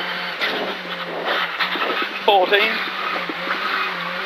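Rally car's engine running hard with steady gravel and tyre noise, heard from inside the cabin, as the car slows and shifts down from fourth to second for a tight, slippery left-hand corner.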